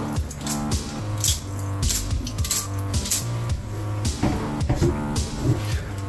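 Background music with steady low held notes, over the crisp rattle of a stainless mesh strainer of rinsed brown rice being shaken to drain off the water.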